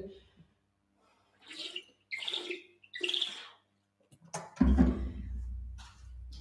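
Three short swigs from a sports water bottle, gulped about half a second apart. About four and a half seconds in there is a click, then a low rumble of movement.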